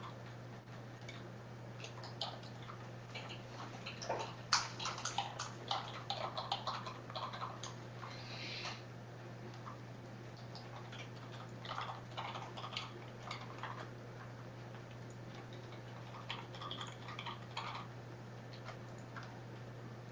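Computer keyboard and mouse being worked in irregular clusters of light clicks and taps, over a steady low hum.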